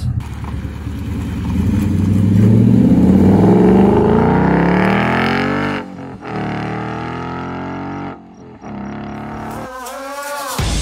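Ford Mustang GT's 5.0-litre V8 accelerating, its exhaust note rising steadily in pitch for about six seconds; after a brief cut it carries on at a steadier, slightly falling pitch.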